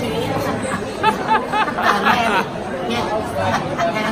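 Women's voices exclaiming excitedly over the background chatter of a crowded room, with high, swooping speech loudest from about a second in.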